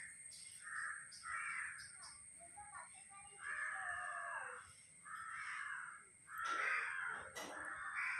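Crows cawing, a series of about six harsh calls, the loudest near the end, over a steady high-pitched whine.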